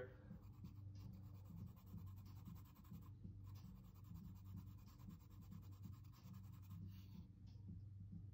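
Faint scratching of a hard graphite pencil shading on sketchbook paper in light, repeated strokes, with very little pressure.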